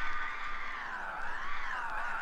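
Breakbeat DJ mix with the bass filtered out, leaving a thin, mid-range sound. A pitched line in it dips and rises, peaking about one and a half seconds in.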